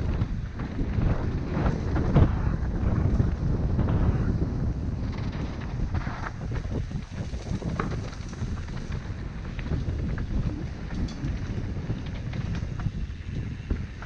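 Wind buffeting a helmet-mounted camera's microphone as a mountain bike rolls down a dirt trail, with the rumble of the tyres and frequent small knocks and rattles from the bike over bumps, strongest in the first few seconds.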